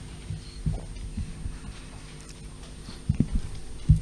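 A few soft, irregular low thumps over a steady low hum, with no speech.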